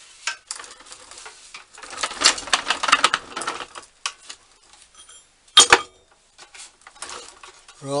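Irregular clattering and knocking of steel plates and wood pieces stacked on a small castored dolly as it is handled. There is a dense run of rattling about two seconds in and two sharp knocks a little past the middle.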